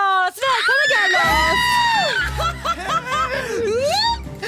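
Women screaming and squealing with delight at a surprise arrival, long high shrieks that glide up and down. Upbeat music with a low beat comes in about a second in.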